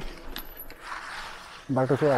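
Mountain bike rolling along a wet, puddled dirt lane: the rear hub's freewheel ticking, with tyre noise on wet gravel that grows about a second in.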